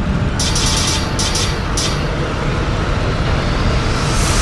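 TV station logo sting: a dense low rumbling drone with music, broken by several short bursts of shimmering hiss in the first two seconds and a swelling whoosh near the end.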